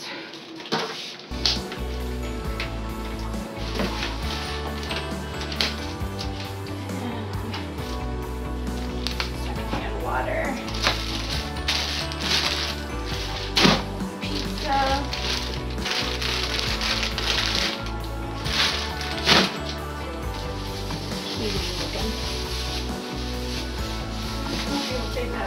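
Background music with a steady bass line comes in about a second in and runs under sharp clicks and rustling from plastic bags and food packages being handled and thrown away.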